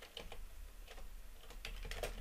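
Computer keyboard typing: a faint, irregular run of soft key clicks as code is entered.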